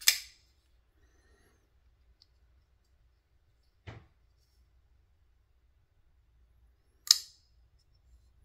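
Mocenary MK-10 titanium-handled folding knife: sharp metallic clicks as the blade snaps open into lockup, once at the start and again near the end, with a fainter click about halfway. The first click has a brief ring.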